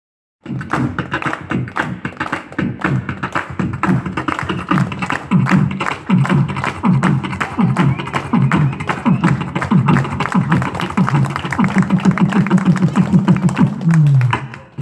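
A man beatboxing into a handheld microphone: a fast run of vocal drum clicks and snares over bass notes that slide down again and again, starting about half a second in and holding a low bass tone near the end.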